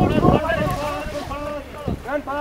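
Wind buffeting the microphone, cutting off about half a second in, followed by several men's voices calling out over one another as the crew run the glider off the slope.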